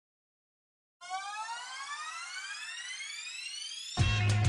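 About a second of silence, then a single synthesized tone with overtones rising steadily in pitch for about three seconds: a riser building up into a hip-hop beat that comes in right at the end.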